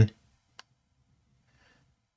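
A single sharp click from a computer mouse about half a second in, as the web page is scrolled, then near silence.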